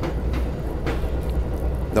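Passenger train running, heard from inside the car as a steady low rumble.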